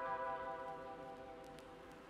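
Quiet background music: a soft, bell-like held chord that slowly fades.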